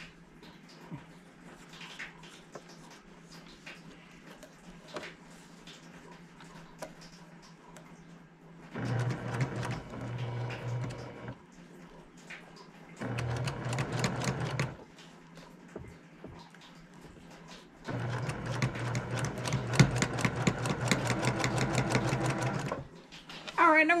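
Domestic electric sewing machine stitching seams through cotton quilt squares in three runs, short, shorter, then a longer one of about five seconds, with a fast, even needle rattle and a motor hum. Before the first run there are only faint ticks of the fabric being handled.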